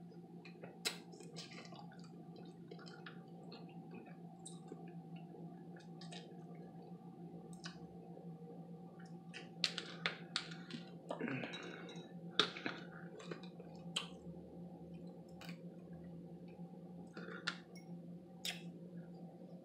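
Crab legs being picked apart by hand: scattered clicks and snaps of shell, with chewing and mouth sounds, a few sharper snaps in the middle. A steady low hum runs underneath.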